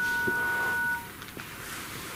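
A steady two-tone electronic beep lasting about a second, then quiet room tone.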